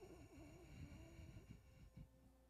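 Faint, quiet exhale with a low wavering hum in the voice, lasting about a second and a half: a person breathing out with effort while holding an abdominal twist.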